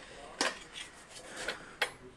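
Light metallic clicks and clinks from a handheld iron-bodied infrared heater being handled, its metal casing and grille knocking several times.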